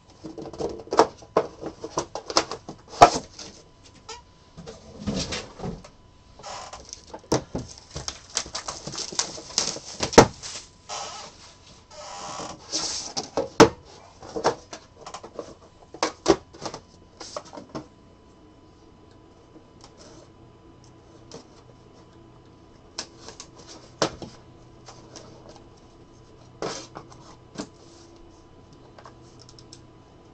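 Hard plastic card holders and box packaging handled on a tabletop: a busy run of clicks and knocks with rustling stretches in the first half, then only occasional light clicks.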